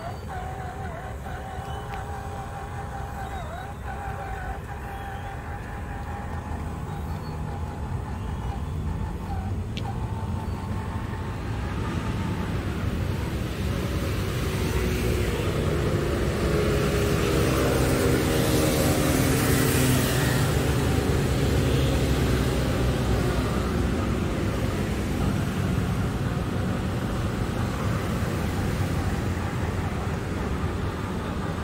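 Electric RC crawler motor and gears whining as the scale off-road truck drives along a wooden deck. A road vehicle passes by, swelling to its loudest about two-thirds of the way in and then fading.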